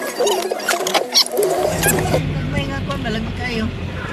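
A road vehicle's engine hum comes in about a second and a half in and runs steadily, under people's voices talking aboard, with a few knocks and rattles early on.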